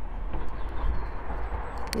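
Wind buffeting a phone's microphone outdoors: a steady low rumble with a hiss over it, and one short click near the end.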